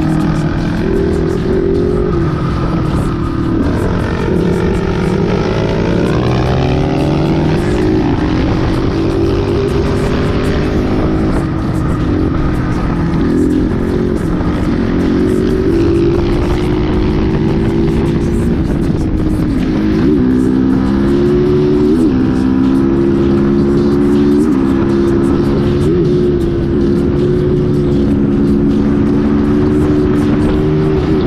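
Motorcycle engine running under way, its pitch rising with the throttle and dropping sharply several times at gear changes, then holding steady toward the end.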